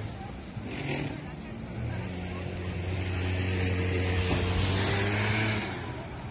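A motor vehicle engine running steadily nearby, heard as a low, even hum that comes in about two seconds in and fades shortly before the end, over a street background of voices.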